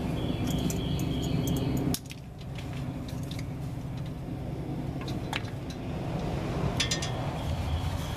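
Small sharp metallic clicks and clinks of a crimping tool and butt connectors being worked onto thin wires, a few at a time with pauses between. A steady low hum runs under the first two seconds and cuts off suddenly.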